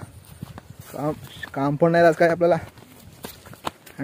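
A man talking for about two seconds in the middle. Before and after the talk come sharp, irregular footstep clicks as he walks a grassy trail.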